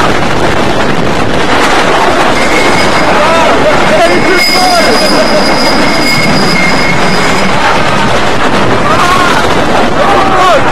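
Wooden roller coaster train running along its track with a loud rattling rush of noise, riders yelling and screaming over it. A high steady wheel squeal sets in about two seconds in and stops about seven and a half seconds in.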